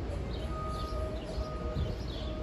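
Street ambience with a low rumble and small birds chirping in short downward notes. A steady distant tone comes in about half a second in and holds, with brief breaks.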